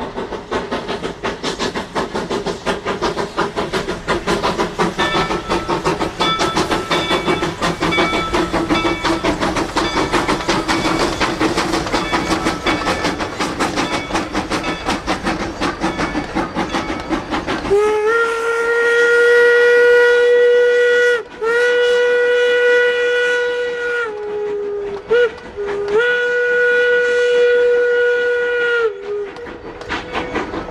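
Steam-hauled passenger train passing, with a fast, dense clatter of exhaust and wheels on the rails. About two-thirds of the way in, the locomotive's steam whistle blows two long blasts, a short toot and a final long blast, the long-long-short-long pattern of a grade-crossing signal.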